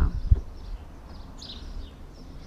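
Small birds chirping lightly in short high calls over quiet outdoor background, with a single low thump about a third of a second in.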